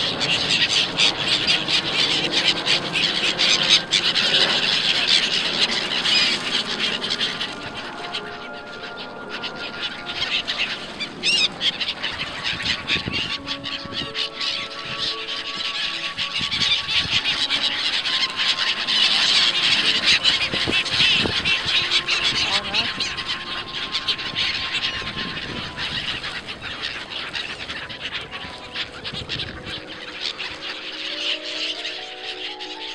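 A flock of black-headed gulls calling in a dense, shrill chorus with wings flapping, loudest in the first few seconds and again past the middle. Sustained music tones sit faintly underneath from about a third of the way in.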